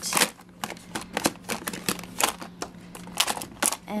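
Plastic makeup palettes and compacts clicking and clacking against each other and a clear acrylic organizer as they are shuffled and set straight in a drawer: a quick, irregular run of small clicks.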